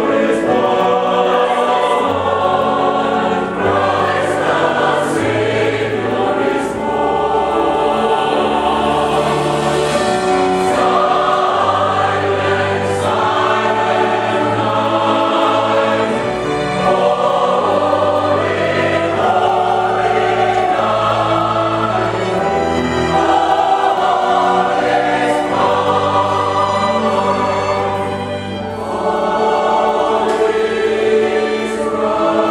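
A mixed choir singing a Christmas canon with orchestral accompaniment of piano, strings and bass, over a slow bass line that steps to a new held note every second or two.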